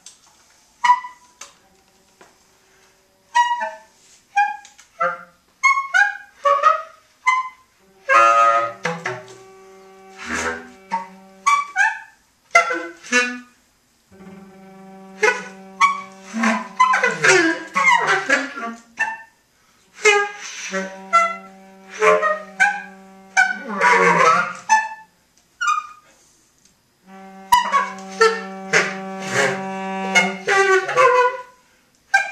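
Free-improvised jazz from bass clarinet, tenor saxophone and cello: scattered short stabs and squeaks with some held low notes, broken by brief near-silent pauses between phrases.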